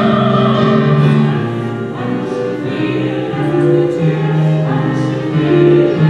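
Men's choir singing held chords that change every second or so, accompanied on a digital keyboard.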